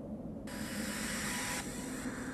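Steady low hum, joined about half a second in by a rush of hiss-like noise.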